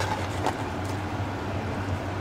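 A large metal pot of water and soaked basmati rice at a boil over a high flame, a steady hiss with a low hum. A light clink of the stirring spoon against the pot comes about half a second in.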